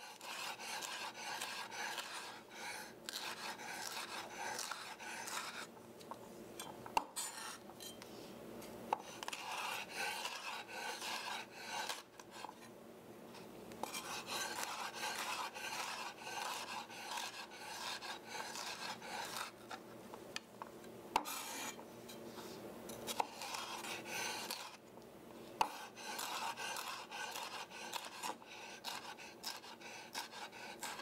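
Chef's knife dicing red bell pepper on a wooden cutting board: quick runs of cuts through the pepper and onto the board, broken by short pauses, with a few sharper knocks of the blade.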